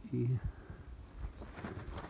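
A man's voice: one short hesitation syllable a quarter second in, then a low, faint outdoor background.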